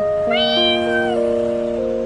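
A single cat meow, a little under a second long, rising at the start and then held, over background music with long sustained notes.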